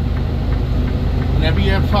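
Semi truck's diesel engine running at low speed with a steady low hum, heard from inside the cab.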